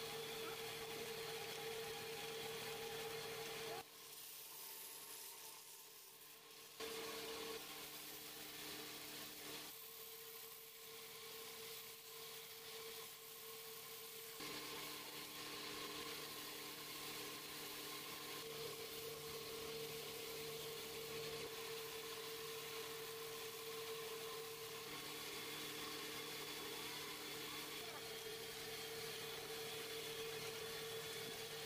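Electric wood lathe running with a steady hum as a rosewood bowl spins and is sanded by hand, with a faint hiss over it. The sound drops quieter about four seconds in and again around ten seconds, then returns.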